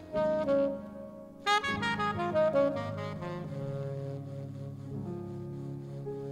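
Jazz-fusion band playing live: a saxophone plays quick phrases with a bright, loud note about a second and a half in, then settles into held notes over the band about halfway through.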